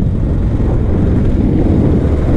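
Bajaj Pulsar 220F motorcycle's single-cylinder engine running steadily while riding, with wind rumbling on the microphone.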